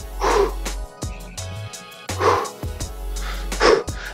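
A man's forceful exhales, three of them spaced a second and a half to two seconds apart, from the effort of push-ups and knee tucks, over background music with a steady bass line.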